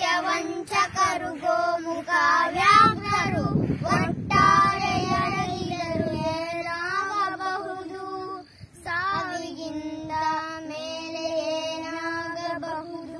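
A child singing a melody in long, held, wavering notes. A low rumble sits under the voice from about two and a half to six seconds in.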